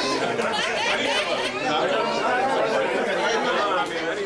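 Overlapping chatter of several people talking at once, with no single voice standing out.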